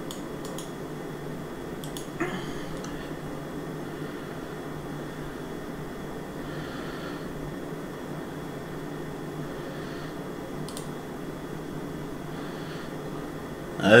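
Steady low hum of room noise, with a few faint clicks and a soft knock about two seconds in.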